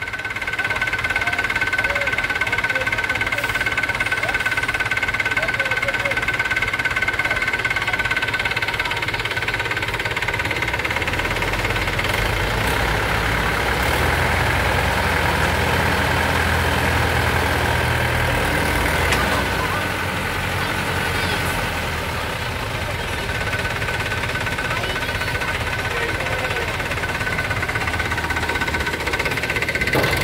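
Mahindra 475 DI tractor's diesel engine running under load as it tows a mud-stuck bus. Its deep rumble swells about a third of the way in and eases off again after about twenty seconds, with a steady high whine running over it.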